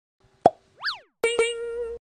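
Cartoon intro sound effects: a short pop about half a second in, a quick whistle that rises and falls, then a struck note that keeps ringing.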